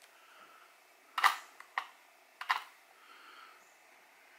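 Tweezers clicking against the metal parts of a Seiko 7548 quartz watch movement while the hacking lever is worked loose: a few small, sharp clicks, the clearest about a second in and two and a half seconds in.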